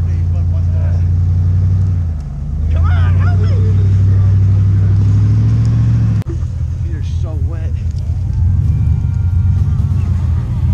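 Dodge Ram 1500 pickup engine run hard as the truck tries to drive out of deep snow. It eases off briefly about two seconds in, then pulls again with a slowly rising pitch. After a sudden break about six seconds in, a choppier engine rumble continues.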